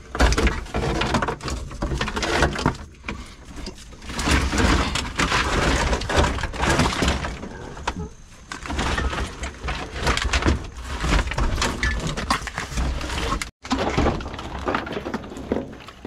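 Wiring harness of an old Toyota pickup being pulled and worked out of the stripped cab: a continuous, irregular jumble of scraping, rustling and clattering as the wires and plastic connectors drag and knock against the metal.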